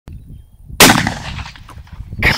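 A single rifle shot about a second in, its report trailing off over the following second.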